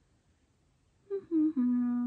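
About a second in, a woman hums a short closed-mouth 'hmm' that steps down in pitch over three notes, holding the lowest one.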